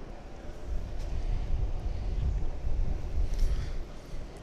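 Wind buffeting the camera's microphone, giving a low, uneven rumble.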